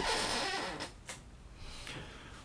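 Clear plastic parts bag rustling as it is handled and set aside, loudest in the first second, with a brief crinkle just after, then fading to faint handling noise.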